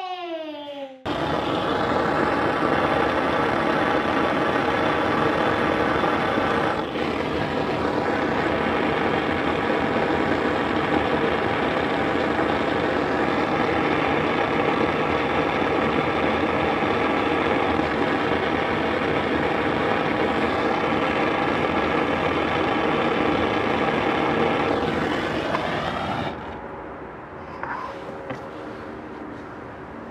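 Handheld gas torch running steadily with a loud, even rushing noise as its flame is held on a plastic toy tractor. It dips briefly about seven seconds in and is shut off about two seconds before the end, leaving only the quieter crackle of the burning plastic.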